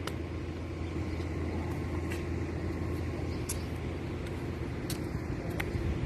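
Steady low rumble of distant engines, with a faint steady hum and a few faint clicks.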